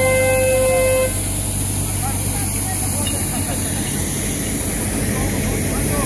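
A horn sounding one long steady note that cuts off about a second in, over the steady low hum of a street sweeper's engine running.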